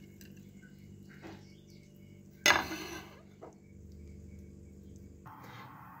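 Dry lentils poured from a bowl into a metal cooking pot: a short rattling rush about two and a half seconds in, with a few faint clicks around it, over a faint steady background hum.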